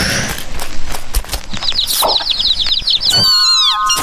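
Cartoon chicken sound effects: a noisy rush with quick pattering steps, then a fast run of high, chick-like peeps, and a falling whistle near the end.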